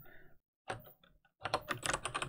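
Typing on a computer keyboard: a lone keystroke a little under a second in, then a quick run of keystrokes in the last half-second.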